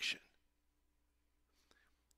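The last syllable of a man's speech fading out right at the start, then a pause of near silence: faint room tone with a weak steady hum.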